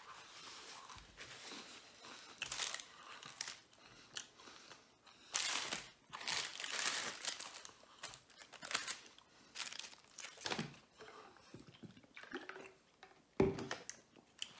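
Crunching and chewing of a Jack in the Box hard-shell taco: an irregular string of crisp crackles between short pauses, with some crinkling of the paper wrappers.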